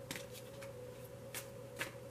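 Quiet room tone: a steady low electrical hum with a few faint, light clicks.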